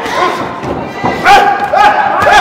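Several dull thuds of punches landing in a bare-knuckle-style street boxing fight. From a little past a second in, a crowd of onlookers starts yelling, getting louder.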